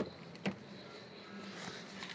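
Car door being opened: two sharp clicks about half a second apart from the handle and latch, over a faint steady hum.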